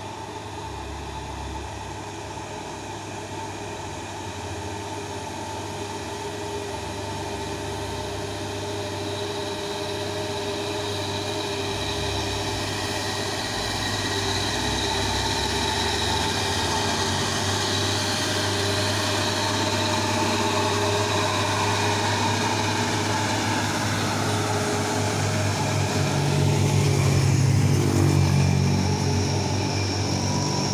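Diesel engine of a heavy tanker truck labouring up a steep climb, growing steadily louder as the truck approaches and passes. Near the end a louder, lower engine sound peaks as another truck and motorcycles come close.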